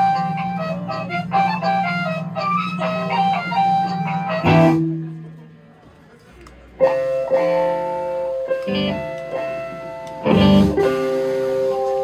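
Electric guitar noodling between songs: short melodic notes over a held low note, breaking off about four and a half seconds in, then more sustained notes picking up a couple of seconds later.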